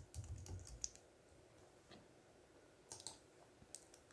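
Faint computer keyboard keystrokes during the first second, then a few sharp clicks about three seconds in and once more just before the end.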